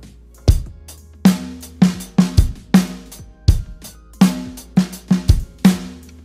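Acoustic drum kit (Dixon drums, Istanbul Agop cymbals) playing a 16-beat groove with off-beat snare: hi-hat keeping time, bass drum strokes, and snare hits landing on syncopated sixteenth notes. The same one-bar pattern is played twice, starting with a bass drum hit about half a second in.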